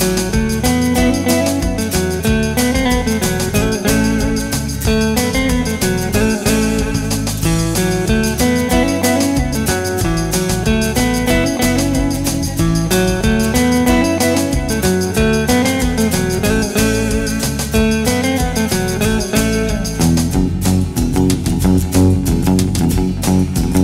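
Stratocaster electric guitar playing an instrumental melody over a backing track with bass and drums.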